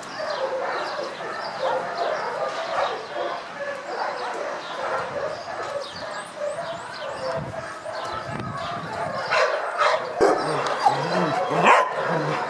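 Many dogs barking and yipping at once, a dense overlapping chorus from kennel dogs, with louder, closer barks in the last couple of seconds.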